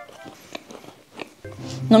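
Quiet chewing of a cookie with a few faint small crunches, under soft background music; a woman's voice begins near the end.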